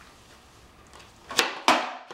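Skateboard smacking a concrete floor twice, about a third of a second apart: the tail popping and the board landing in an ollie.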